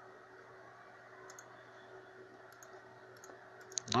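A few faint computer mouse clicks over a low steady hum, with a sharper click just before the end.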